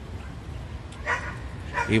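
Low, steady outdoor background noise, broken by a short sound about a second in. A man's voice starts just before the end.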